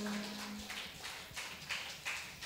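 A low held note dies away in the first part of a second. After it come faint scattered footsteps and small knocks on a hard floor.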